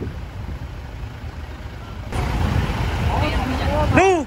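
Fire truck engines running with a steady low rumble, louder from about halfway through, with voices of people nearby faintly in the background.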